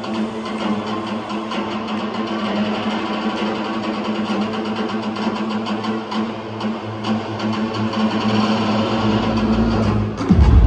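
Electronic dance music played loud through a club sound system during a breakdown. The beat and bass drop out, leaving a held synth chord, and a low rumble builds toward the end.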